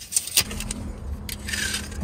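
Handling of a steel tape measure: a couple of sharp clicks and light metallic rattling and scraping as the tape blade is moved along the mattress, over a steady low hum.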